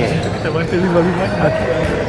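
A man talking over the chatter of players, with a knock from a ball on the hard court floor right at the start.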